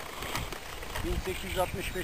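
A man's voice talking quietly in the second half, over steady outdoor background noise.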